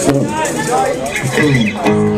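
Men's voices talking over the stage sound between songs, with a couple of sharp knocks. Near the end an electric guitar chord starts ringing steadily through the amplifier.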